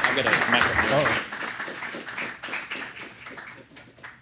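Audience applauding, the clapping thinning out and dying away over a few seconds, with a man's voice over it in the first second.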